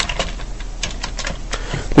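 Computer keyboard keys clicking in a few irregular keystrokes as a short terminal command is typed, with pauses between the clicks.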